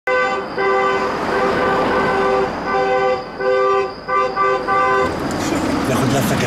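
Car horn honking in a rhythm, one long blast of about two seconds followed by shorter quicker honks, stopping about five seconds in: the celebratory honking of an arriving wedding car.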